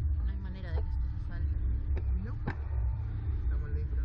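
Steady low rumble and hum of the Slingshot ride's machinery, with quiet voices and two sharp clicks about halfway through.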